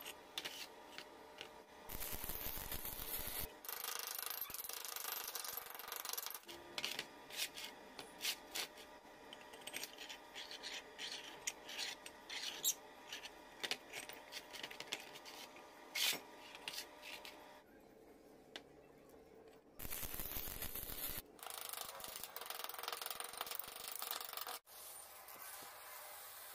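Steel parts of a homemade metal-bending jig being handled and fitted together: irregular clinks and taps of metal on metal, with several stretches of scraping and rubbing.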